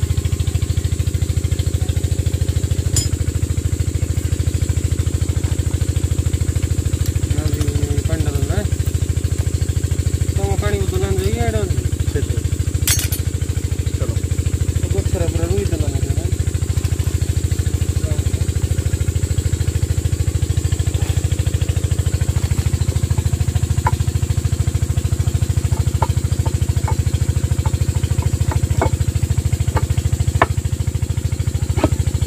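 An engine running steadily at a constant speed, a continuous low pulsing drone, with faint voices in the background at times.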